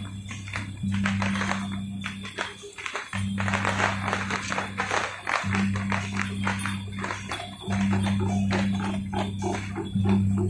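Procession music with dense jangling, clattering percussion over a low droning tone that breaks off and restarts about every two seconds.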